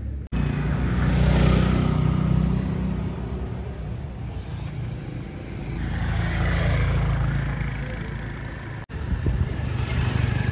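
Motor vehicles running past, a low engine rumble that swells twice: about a second and a half in, and again around six to seven seconds. The sound cuts out for an instant just after the start and again about nine seconds in.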